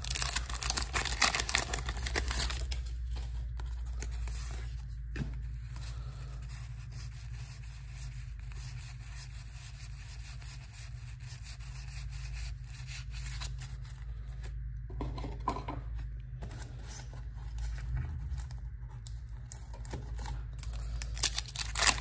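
The wax-paper wrapper of a 1987 Donruss baseball card pack is torn open with a crackly crinkle over the first couple of seconds. This is followed by soft rustles and small ticks as the cardboard cards are thumbed through one by one, and another wrapper is crinkled and torn near the end. A steady low hum runs underneath.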